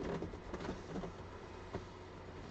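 Cardboard boxes being handled on a table: a few light knocks and scrapes over a steady low hum.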